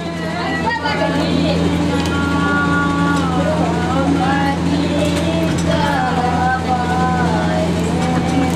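A voice intoning in long, smoothly gliding sung lines over a steady low electrical hum.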